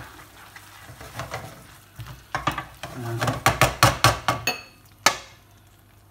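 A silicone spatula stirring thick risotto in a pan, quiet at first. It then breaks into a quick run of knocks and scrapes on the cookware, about four to five a second, and ends with one sharp click.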